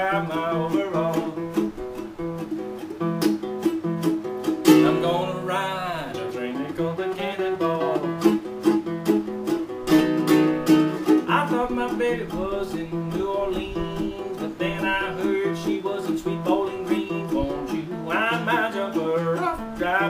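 Guitalele, a quarter-size six-string nylon-string guitar, playing a plucked blues instrumental break.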